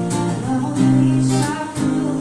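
Acoustic guitar being strummed while a woman sings held notes over it.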